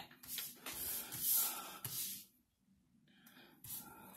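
Paper rustling and sliding as a planner's pages are set down on a desk and handled, loudest in the first two seconds, with a few fainter rustles near the end.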